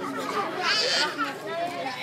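Chatter of several voices, children's among them, with no music playing; one high-pitched voice stands out a little under a second in.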